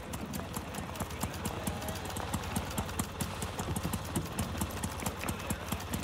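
Busy-room ambience from a film soundtrack: a dense, irregular run of short clicks and knocks, such as footsteps and small objects on a hard floor, over a steady low hum.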